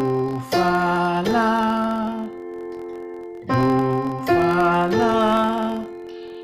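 A Yamaha electronic keyboard playing the C–F–A chord, an F major chord in second inversion. It is struck in two groups of three about two seconds apart, and each chord rings on between strikes.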